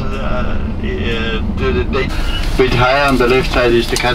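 Speech over the steady low rumble of a tour coach driving, heard from inside the coach; about two seconds in the rumble fades and louder speech takes over.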